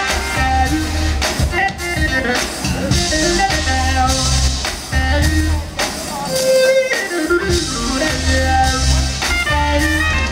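Live funk band playing: saxophone and electric guitar over keyboards, drum kit and a pulsing bass line. The bass drops out for a moment about seven seconds in.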